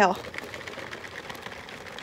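A gift-wrapped box of chocolate-covered cherries being shaken, the candies rattling inside the box in a soft, continuous rattle.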